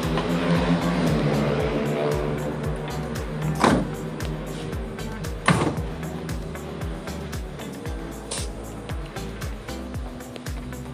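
Background music with a steady beat, broken by two sharp knocks about a third of the way and halfway through.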